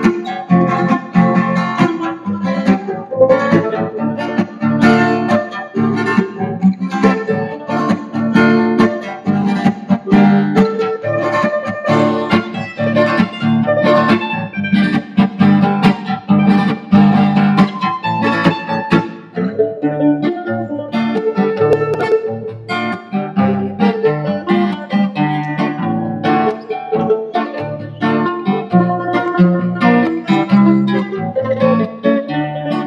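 Bowl-back mandolin and acoustic guitar playing an instrumental duet, quick plucked notes over a steady low accompaniment.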